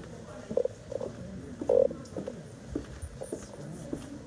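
Indistinct people's voices: short low murmurs and fragments of speech with no clear words, over a low rumbling background.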